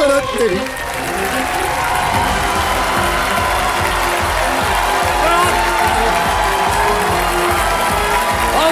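Studio audience applauding and cheering over theme music with a steady low beat.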